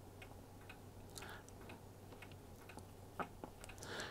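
Dry-erase marker drawing on a whiteboard: faint scratchy strokes and scattered light ticks, over a steady low hum.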